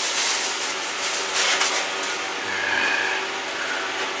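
Close rustling and rubbing of hands handling packing materials, a steady scratchy noise with no clear strikes.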